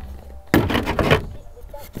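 A rough scraping rustle, about a second long, of a wooden board rubbing against a clear plastic sheet.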